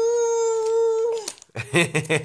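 A toddler's long wailing cry, held at one steady pitch, breaking off about a second in. A lower adult voice starts speaking shortly after.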